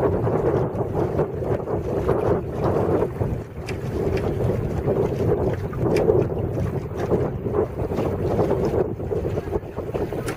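Wind buffeting the microphone over water washing and splashing along the hull of a small sailing duck punt, in uneven gusts.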